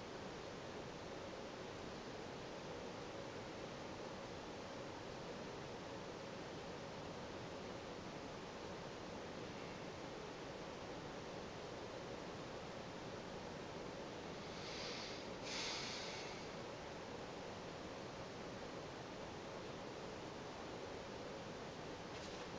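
Faint, steady hiss of room tone and microphone noise, with one short soft rustle of noise about fifteen seconds in.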